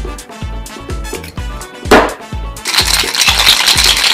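Ice rattling hard inside a stainless steel cobbler cocktail shaker being shaken to chill the drink, starting a little past halfway after a single knock. Background music with a steady beat plays throughout.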